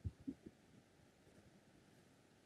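Near silence, with three or four faint low thumps in the first half second.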